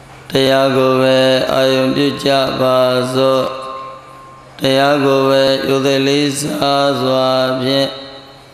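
A Buddhist monk chanting in a single male voice, in long held tones; two phrases with a short pause about halfway through.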